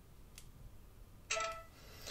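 Alert chime from a Samsung Galaxy Note phone: a short pitched tone that comes in suddenly about a second and a quarter in and fades within half a second, after a faint tick.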